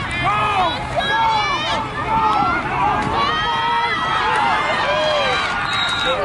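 A crowd of spectators shouting and cheering, many voices overlapping one another.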